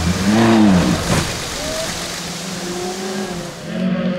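Rally car engine passing close at speed on a gravel stage, its note rising and then falling as it goes by, with a hiss of tyres on gravel. Afterwards a second car's engine is heard more faintly, swelling again near the end.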